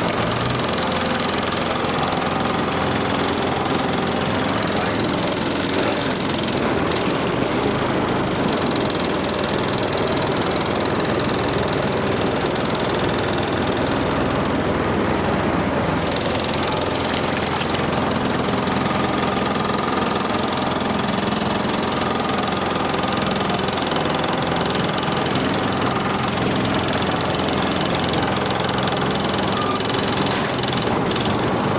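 A boat engine idling steadily.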